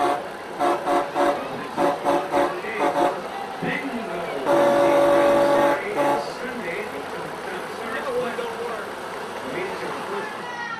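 Semi truck's air horn honked in a quick string of short toots, then held for one long blast about four and a half seconds in, with a last short toot just after.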